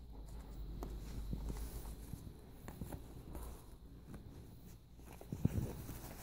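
Faint rustling of satin and small metal clicks as hands work a steel corset busk closed, pressing its pins into their loops, with a low thump about five and a half seconds in.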